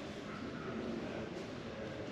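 Low background murmur of indistinct voices over steady ambient noise.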